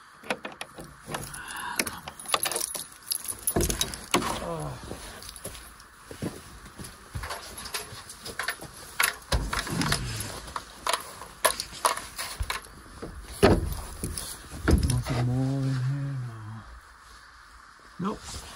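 A bunch of keys jangling and clicking against a brass padlock as it is unlocked, with a run of sharp clicks and knocks. This is followed by steps in deep snow and, near the end, a low drawn-out creak as a wooden shed door is opened.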